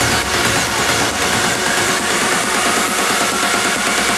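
Electronic trance music in a build-up: the bass and kick drop away and a synth tone rises slowly over the last couple of seconds.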